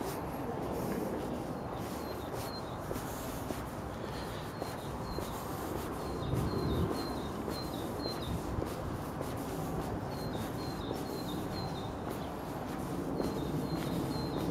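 A small songbird singing in short runs of quick, high chirps, repeated several times, over a steady low rumble of street noise.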